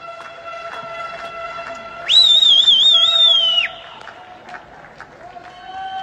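A loud whistle comes in about two seconds in, wavers up and down in pitch for about a second and a half, and drops away at the end. Behind it, neighbours sing faintly and at a distance from their balconies, holding long notes.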